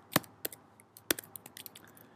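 A few scattered keystrokes on a computer keyboard, separate sharp clicks with the loudest just after the start, as a word is deleted and retyped.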